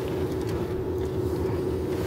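Car driving along a park road, heard from inside: steady engine and tyre noise with a low hum.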